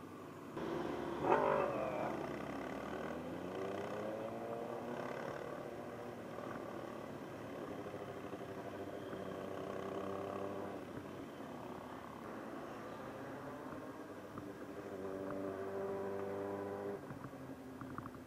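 Motorcycle engine running while riding, with a brief loud burst just over a second in, then its pitch rising as it accelerates and getting louder again near the end.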